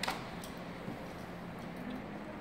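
A sharp click right at the start, then a lighter tick about half a second in and a few faint ticks, as the coat-hanger wire trigger of a homemade PVC ice-fishing rig is handled and set, over a steady low hum.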